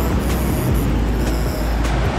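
Ocean surf washing in over a rocky shore: a steady rush of breaking waves with a strong low rumble underneath.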